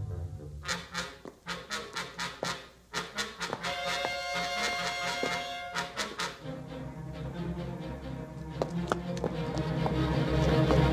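Tense orchestral film score with brass. Through the first half a run of sharp percussive hits plays over held tones; after that low sustained notes take over and grow louder toward the end.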